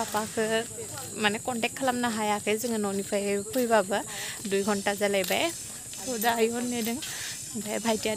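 A woman talking steadily, with a short pause about six seconds in, over a constant high-pitched hiss.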